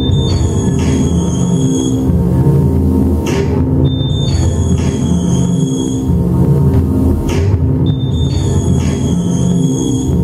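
Electronic industrial music played on synthesizers: a dense, layered low drone, with a pair of high steady tones entering about every four seconds, each entry preceded by a short noise sweep.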